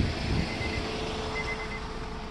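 Steady low hum of an idling car engine, with a faint high beep sounding in short spells.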